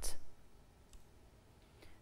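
A woman's voice trails off at the very start, then near silence with faint room tone, broken by a soft click about a second in and another just before the end.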